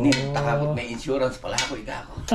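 Dishes and serving utensils clinking and knocking as food is set out on a table, a few short sharp clicks spread through the two seconds.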